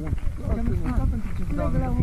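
A man's raised voice arguing, the words unclear, over a steady low rumble on a phone microphone.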